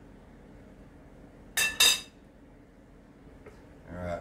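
A metal serving spoon knocked twice against the rim of a dish, two quick clinks with a short ring. The rest is faint room tone.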